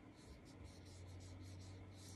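Faint strokes of a watercolor paintbrush brushing across paper, over a steady low hum.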